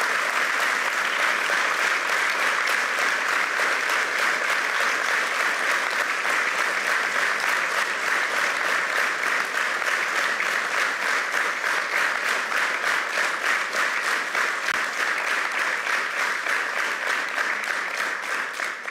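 A large audience applauding at length, the clapping falling into a steady rhythm, dying away at the very end.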